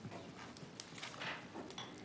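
Faint scattered clicks and knocks with a little rustling: small handling noises from people seated at a meeting table, over a low room hum.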